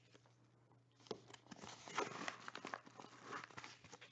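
Kraft-paper pack envelope being opened by hand and sleeved cards slid out, faint paper rustling and crinkling with small ticks, starting about a second in.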